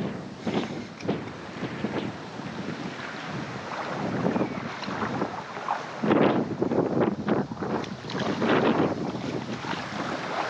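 Wind buffeting the microphone in irregular gusts, strongest about six seconds in, with small waves washing in the shallows.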